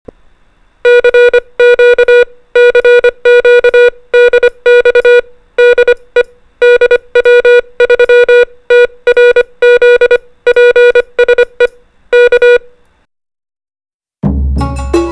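Morse code sent as a steady mid-pitched beep, keyed on and off in short dots and longer dashes, spelling out the amateur radio callsign DW3TRZ. The beeping starts about a second in and stops a little over a second before the end.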